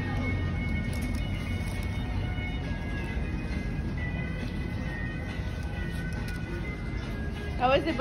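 Steady background noise of an outdoor eating area with faint music in it, and a voice speaking briefly near the end.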